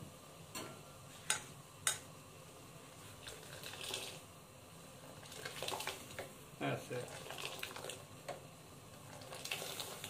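A steel ladle clinking against a steel saucepan, with the liquid splashing as simmering Kashmiri tea is scooped and poured back to aerate it and bring out its colour. A few sharp metal clinks come in the first two seconds, and quieter ladle and splashing sounds follow from about halfway.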